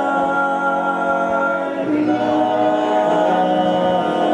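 Male vocal group singing a cappella in close harmony: several voices hold a chord together, then move to a new chord about two seconds in.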